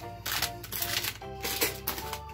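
Background music with held notes, over a few short crinkles and clicks of snack packets being picked up off a counter and dropped into a plastic bucket.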